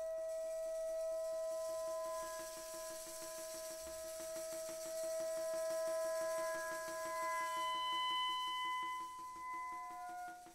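Soprano saxophone holding a long, soft, pure note, with other steady ringing tones sounding alongside it and a high hiss that fades out around eight seconds in. Near the end the pitches shift to new held tones.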